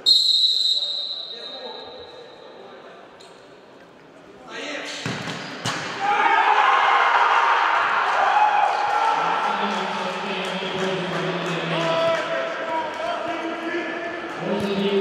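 Indoor futsal match: a sharp referee's whistle blast at the very start that fades over a couple of seconds, then, about four seconds later, the ball being kicked and bouncing on the court floor, with players shouting and calling for the rest of the time, all echoing in the large sports hall.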